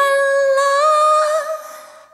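A woman's voice holding one long, high sung note, almost unaccompanied; a faint low backing drops out about half a second in, and the note fades away near the end.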